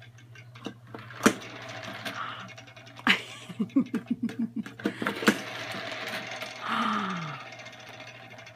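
Plastic baby toy being handled and pressed: sharp clacks at about one, three and five seconds, with smaller rattling knocks between them. A short laugh comes about halfway through.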